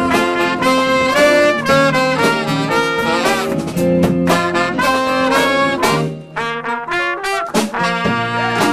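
Live jazz band with a horn section of trumpets, saxophone and trombone playing a riff in chords over bass and keyboard. About six seconds in the low end drops away and the horns play a few short, punchy stabs.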